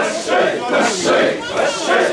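A crowd of mikoshi bearers chanting and shouting in unison as they carry the portable shrine, rhythmic massed calls roughly twice a second.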